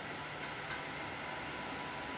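Steady fan hum and hiss from a powered-on fiber laser marking machine idling, with no cutting heard.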